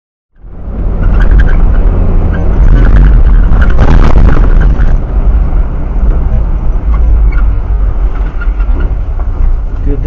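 Road and engine noise of a 4WD on a dirt track, heard through the dashcam's microphone: a loud, steady rumble with clicks and rattles, cutting in abruptly. It eases a little in the second half as the vehicle slows.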